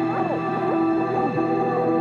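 Ambient background music: long held synth tones with gliding, swooping notes bending up and down over them.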